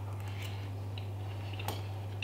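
A man eating from a fork: faint chewing and light cutlery clicks, with one sharper click about one and a half seconds in, over a steady low hum.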